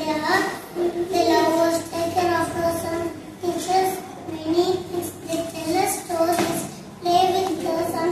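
A young girl reciting a speech about the importance of grandparents, her voice held at a fairly even, chant-like pitch.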